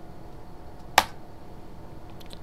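A single sharp click about halfway through: the Backspace key struck once on a computer keyboard, over a faint steady hum.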